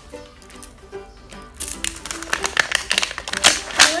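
Crackling and clicking of a toy surprise ball's plastic shell being handled and pried apart, a dense run of sharp clicks starting about one and a half seconds in. Quiet background music plays underneath.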